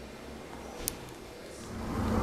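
Quiet room tone with a single sharp click a little under a second in; near the end a low car-cabin rumble fades up.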